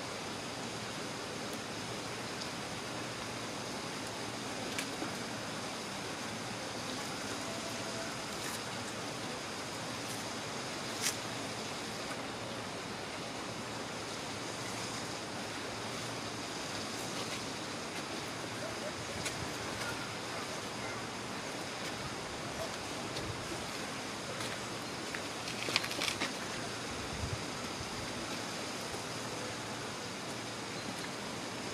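Steady rushing background noise, like running water or wind, with a few brief faint clicks.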